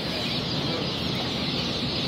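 A crowd of day-old heritage turkey poults peeping together in a steady, dense chorus.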